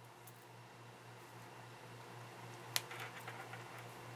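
Faint handling of beading thread being drawn through a seed bead, over a steady low hum, with one small sharp click about two-thirds of the way through and a few softer ticks after it.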